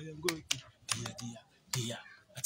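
A man's voice preaching, with several sharp clicks, irregularly spaced, over it.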